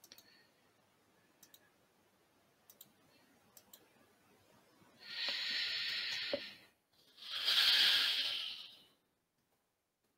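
Two breaths close to a headset microphone, each a hiss lasting about a second and a half, the second louder, after a few faint mouse clicks.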